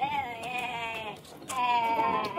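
A man yelling a drawn-out, wavering "yeeei" twice: a first call of about a second, then a louder second one starting about one and a half seconds in.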